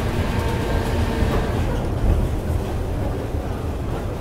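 1890s carousel turning: a steady low mechanical rumble from the revolving platform and its drive.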